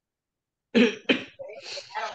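A person coughing twice in quick succession about a second in, the first cough the loudest, followed by about a second of quieter throat noise.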